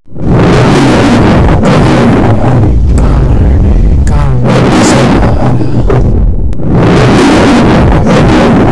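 A very loud lion-style roar set to the MGM lion logo, coming in several long, rough bursts.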